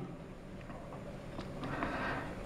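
Quiet room tone of a lecture hall: a faint steady low hum with a few soft ticks about halfway through.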